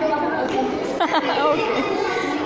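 A group of schoolchildren chattering, several voices talking over one another at once, with one voice rising and falling sharply about a second in.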